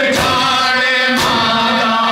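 Male voices chanting a noha, a Shia lament, in long held lines. Sharp strikes come about once a second from mourners beating their chests in unison (matam).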